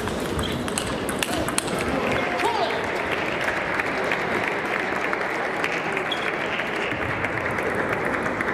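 Table tennis ball clicking off bats and table in a fast rally for about the first two seconds, then spectators applauding, with voices chattering in the hall behind.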